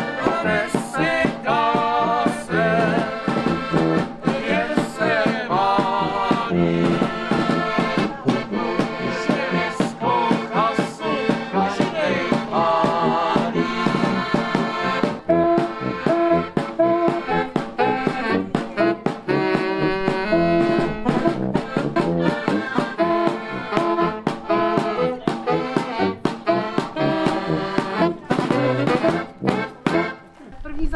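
A small street band of accordion and saxophone plays a cheerful folk tune to a steady beat.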